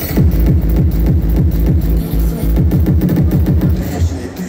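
Loud hardstyle dance music over a festival PA system, led by heavy bass with rapid, repeated falling-pitch bass notes.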